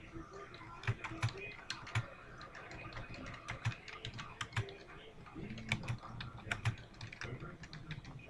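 Typing on a computer keyboard: uneven runs of key clicks as a sentence is typed out.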